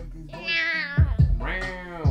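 Two long high-pitched vocal calls, each rising then falling in pitch, over a hip-hop beat with a thumping kick drum.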